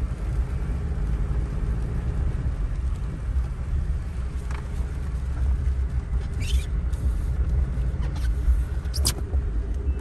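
Steady low rumble of a car heard from inside its cabin, with a few brief rustles about halfway through and again near the end.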